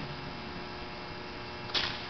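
Faint steady electrical mains hum from the microphone and sound system, made up of many fine steady tones. A brief soft hiss comes near the end.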